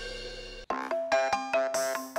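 Background music fading away, then a mobile phone ringtone starting about two-thirds of a second in: a quick, bright melody of repeated notes.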